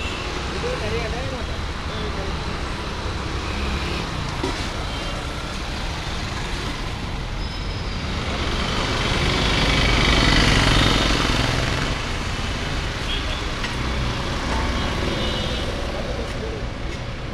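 Steady road traffic passing close by, with one heavier vehicle getting loud about ten seconds in and then fading away; voices murmur underneath.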